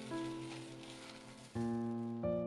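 Rolled oats pouring into a glass bowl, a dry rustling hiss that stops near the end, under background piano music.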